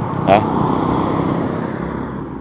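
A car passing close by on the road, its engine and tyre noise slowly fading toward the end.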